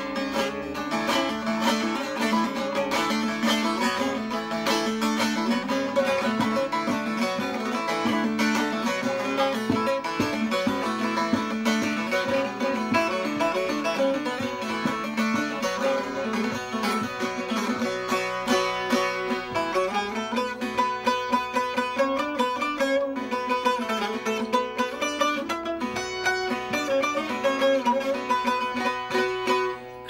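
A bağlama (Turkish long-necked lute) is played solo in a continuous run of rapid plucked notes over ringing lower strings, and the low notes shift about two-thirds of the way through. The instrument has just been refretted and fitted with a new bridge, and it sounds clean, with no fret buzz in the low notes.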